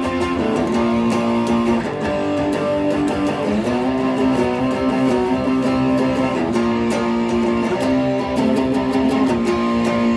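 Les Paul Classic electric guitar played through a JHS Bonsai overdrive on its OD-1 setting, strumming overdriven chords steadily, with the chord changing every second or so.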